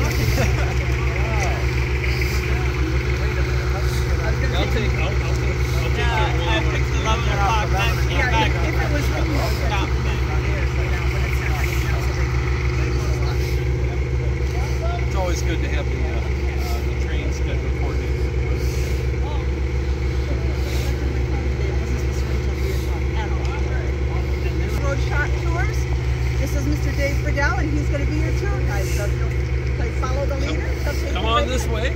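A steady low engine drone with a fast even pulse, with people's voices talking indistinctly over it now and then.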